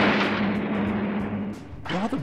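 Cartoon blast sound effect from an 1980s animated-series soundtrack: the noisy tail of a shot or explosion fading away over about a second and a half, over a steady low hum that cuts out shortly before the end.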